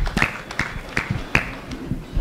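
Hands clapping in a steady rhythm, about two and a half claps a second, dying away near the end.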